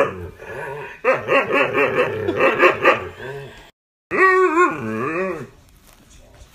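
Malamute-husky mix howling and yowling in wavering, pitched vocalisations. A run of about two and a half seconds, a brief cut-out, then one more loud howl that wavers and falls in pitch before fading near the end.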